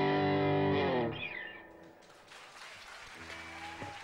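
Distorted electric guitar holding the song's final chord, which dies away over the first two seconds. Faint applause then begins, with a short stray guitar tone sliding upward near the end.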